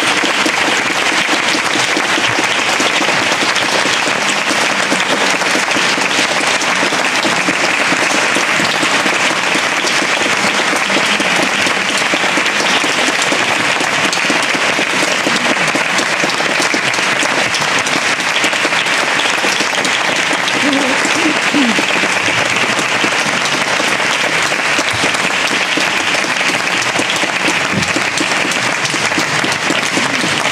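Audience applauding steadily after a concert.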